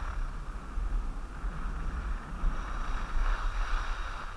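Skis hissing and scraping over groomed snow on a downhill run, swelling louder in the second half, with wind buffeting the microphone underneath.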